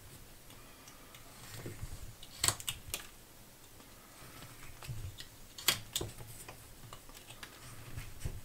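Carving knife whittling a small wooden block by hand: quiet scraping slices broken by sharp clicks as chips snap free, the loudest about two and a half and five and a half seconds in.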